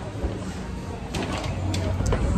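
Handling noise from the phone and a nylon insulated delivery bag being moved: rustling, with a few quick sharp scrapes in the second half, over background voices in a restaurant.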